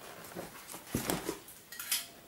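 Handling noise from whole leather hides being moved and folded: a few soft knocks and rustles.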